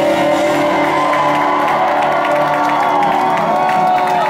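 The last held notes of a live rock song ringing out over a club PA, with a crowd cheering and whooping over them as the song ends.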